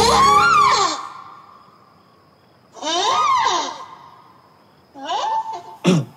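Wordless vocal exclamations from a person, each rising and falling in pitch: a drawn-out one through the first second, another about three seconds in, and a shorter one near the end.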